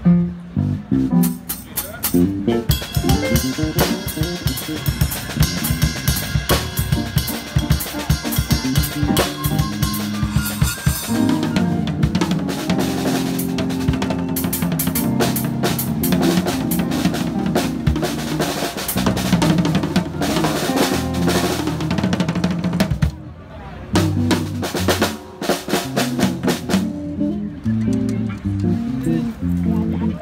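Drum kit played up close with snare, kick and cymbals, over a bass guitar playing a stepping line of low notes. The playing drops out briefly about 23 seconds in, then starts again.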